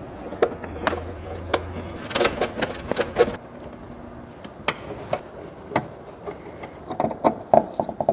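Irregular light clicks and knocks of metal parts being handled: flexible metal conduit pushed and worked into its fitting on a steel electrical box, with a screwdriver meeting the fitting's clamp screw near the end.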